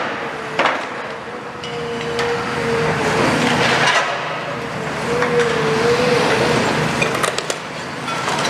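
Demolition excavator working a steel roof frame: a steady engine and hydraulic drone with a wavering whine over it, broken by several sharp clanks and knocks of steel, a cluster of them near the end.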